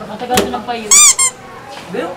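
A short, loud, very high-pitched squeal about a second in, rising then falling, followed at once by a shorter second one, with a brief click just before.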